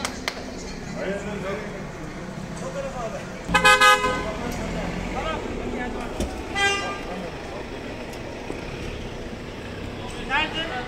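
Car horn honking: a loud burst of quick toots about three and a half seconds in, then one shorter toot a few seconds later, over the chatter of a street crowd.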